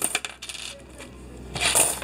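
Loose coins clinking and sliding in the feed tray of a coin-counting machine, with a few clinks at the start and a louder clatter of coins shifting near the end.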